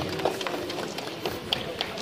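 Crowd ambience at an outdoor gathering: many indistinct voices, with scattered sharp clicks and taps throughout.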